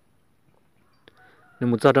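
Near silence for over a second, then a loud voice begins speaking about one and a half seconds in, its pitch wavering.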